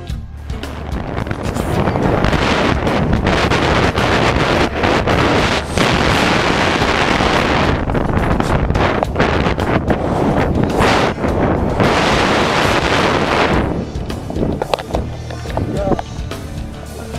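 Loud rushing wind and scuffing on the microphone as a tandem skydiving pair touches down and slides along the dirt. The noise builds about a second in and drops away near the end.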